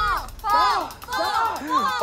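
People's voices talking and calling out, in short phrases that rise and fall in pitch.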